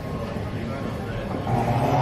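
Busy airport terminal ambience: a murmur of background voices over a low rumbling hum, growing louder about one and a half seconds in.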